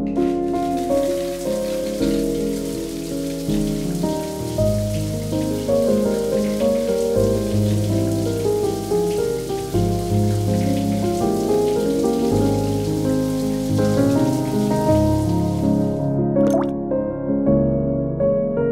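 Steady spray of a running shower hissing under soft piano background music. The water sound stops about two seconds before the end, leaving the music alone.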